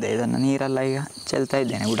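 A man speaking, with a faint, steady chirring of insects behind him.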